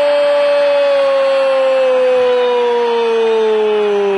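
A football commentator's long drawn-out goal cry, one held "Gooool" shouted at full voice, sliding slowly down in pitch, celebrating a goal just scored.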